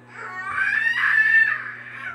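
A long, high-pitched screeching cry that rises at first and then holds for about a second and a half.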